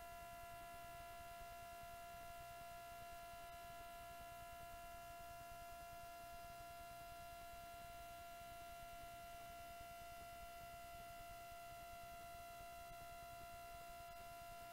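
Near silence: a faint, steady electrical whine made of several constant high tones over a low hiss, unchanging throughout.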